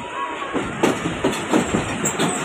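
Passenger train running slowly, heard from an open coach door: the wheels knock over the rail joints several times with running noise in between.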